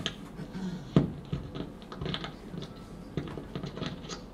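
Microphone handling noise against clothing: soft rustling with scattered light clicks and one sharp knock about a second in.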